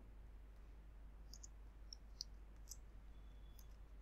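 Faint computer keyboard keystrokes: about half a dozen light, irregular clicks over near silence.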